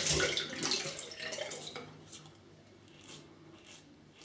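Tap water running into a bathroom sink, dying away about two seconds in. Then a few faint short scrapes as the stainless steel double-edge safety razor is drawn over lathered stubble.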